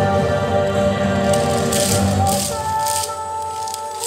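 Yosakoi dance music playing with a heavy beat, and the rattle of wooden naruko clappers in short clattering bursts from about a second in. The beat drops out about two-thirds through, leaving a held note.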